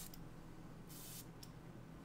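Fragrance bottle's spray atomizer being pressed once about a second in: a short, faint hiss of mist.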